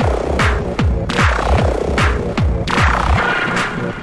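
Techno music: a fast four-on-the-floor kick drum, about two and a half beats a second, under synth tones and hissing noise sweeps. The kick drum drops out about three seconds in, leaving the synths and percussion.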